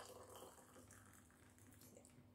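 Hot water pouring very faintly from an electric kettle into a ceramic mug, a little louder at first and then barely audible.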